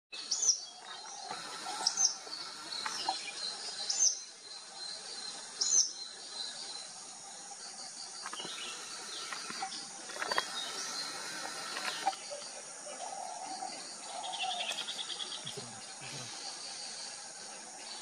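Bird calls over a steady, high-pitched insect drone. There are four loud, sharp call notes in the first six seconds, softer scattered calls after that, and a brief rapid trill about fourteen seconds in.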